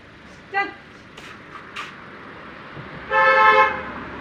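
Car horn sounding one honk of under a second near the end, the loudest sound here.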